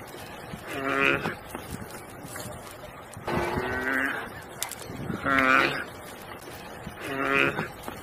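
An animal calling over and over: a drawn-out, pitched cry repeated four times, about every two seconds.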